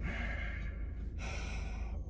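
A man's long, breathy sigh of dismay that fades after about a second, over a steady low hum.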